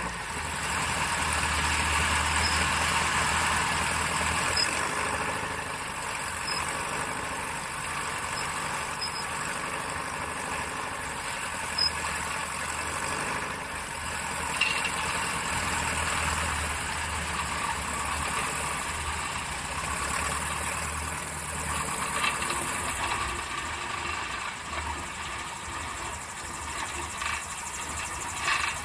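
Piper Super Cub's engine and propeller running steadily in flight, mixed with wind rushing past the outside-mounted camera. Power eases off over the last few seconds as the ski-equipped plane comes in to land on snow.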